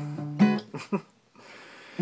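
Acoustic guitar strummed a few times, the chords ringing, then breaking off about a second in and leaving only faint room hiss.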